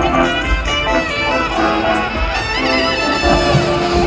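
Drum and bugle corps playing live: a hornline of marching brass holds chords that shift about two seconds in, settling on a long low note near the end, over drums and front-ensemble percussion.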